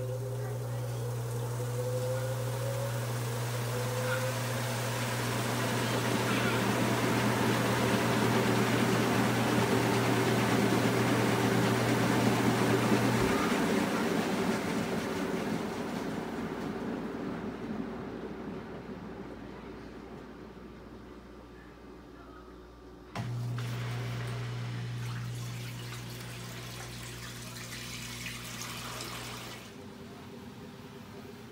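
Panda PAN56MGW2 portable washing machine filling: water running into the tub over a steady low hum. The hum stops about thirteen seconds in and starts again about ten seconds later, while the water sound swells and then fades.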